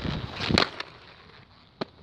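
Inline skates on concrete: a loud scuffing clatter in the first half-second as the skater pushes off from the ledge, then quiet wheel roll and a single sharp click near the end.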